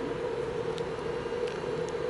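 Steady indoor room hum with a faint constant tone, broken by a few faint soft clicks.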